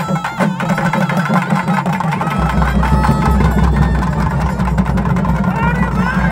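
Traditional Tamil folk music: a reedy wind instrument plays a wavering melody over drumbeats, with the drum strokes loudest near the start. A low steady hum comes in about two and a half seconds in.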